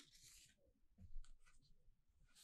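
Faint rustle of a stiff printed card being handled: a soft swish at the start, then a few light rubs and taps about a second in.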